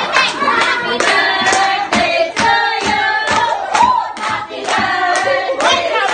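A group of women singing along with rhythmic hand clapping, the claps keeping a steady beat.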